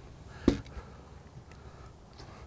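A single sharp knock about half a second in, with a fainter tick later, over faint background noise.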